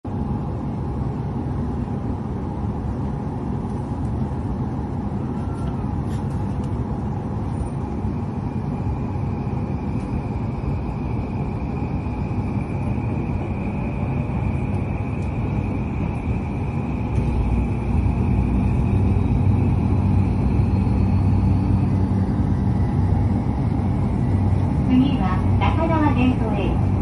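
Inside a JR Yamanote Line electric train in motion: a steady running rumble that grows louder about two-thirds of the way in as the train picks up speed, with a faint high whine through the middle. An onboard announcement begins near the end.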